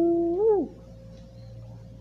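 A single drawn-out wordless vocal call that rises in pitch, holds, then rises briefly and drops off within the first second. After it there is quieter room tone with a faint steady hum.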